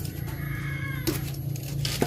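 An animal's wavering high cry in the first second, followed by two light knocks, over a steady low hum.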